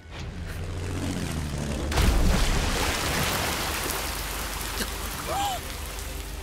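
Sound-effect explosion of a torpedo striking a warship: a low rumble swells, a loud blast comes about two seconds in, and then a long rushing, water-like noise follows.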